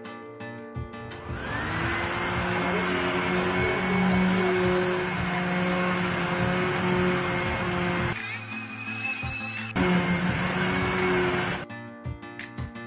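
Corded electric pad (finishing) sander spinning up about a second in to a steady motor whine and running while sanding a teak door panel, with a brief change in its sound around eight seconds in; it stops just before the end.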